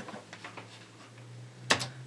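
Quiet handling noise of a plastic gaming headset being put on, with a few faint ticks and then two sharp clicks near the end, over a steady low hum.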